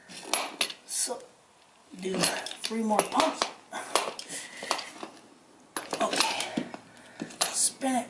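Irregular metal clinks and knocks as a grease gun and its adapter fitting are handled against a steel front wheel hub bearing unit during greasing.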